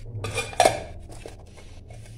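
Stainless steel kitchen bowls being handled, with one sharp metallic clink a little over half a second in and a few lighter knocks after it.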